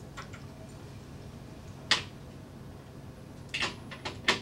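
Metal slotted masses clicking against each other and their hanger as the 20 g and 50 g masses come off and the 100 g mass goes on: a few faint ticks at first, one sharp click about two seconds in, and two or three more near the end, over a low steady hum.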